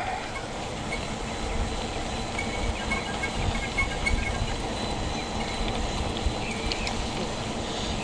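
Mountain bike rolling along an asphalt path: a steady rumble of the tyres on the pavement mixed with wind buffeting the handlebar-mounted camera's microphone.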